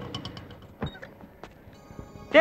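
Two short, soft knocks, about a second in and half a second later, over a faint rapid ticking that fades out early.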